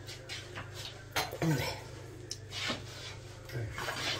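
Quiet kitchen handling: a few light, separate knocks and taps of dishes and utensils on a worktop over a steady low hum, with a brief murmur of voice twice.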